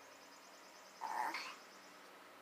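Quiet background with one short vocal sound about a second in, lasting about half a second.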